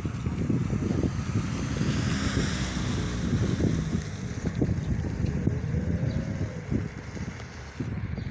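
Wind buffeting the microphone in uneven low rumbling gusts, with a vehicle passing on the road about two to three seconds in.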